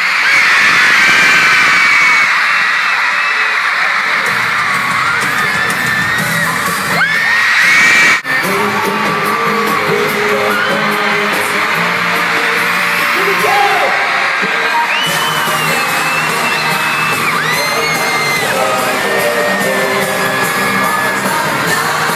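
Arena crowd of fans screaming, many high wavering screams over a dense roar, with live pop music from the stage. The audio breaks off suddenly about eight seconds in, and after the cut the band's music with steady sustained notes carries on under the screaming.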